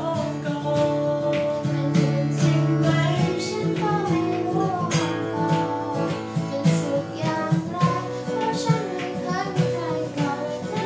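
Acoustic guitar strummed in a steady rhythm, accompanying a young woman singing a Thai pop song.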